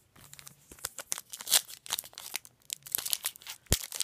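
Foil trading card pack wrapper being crinkled and torn open by hand: an irregular run of crackles and rips.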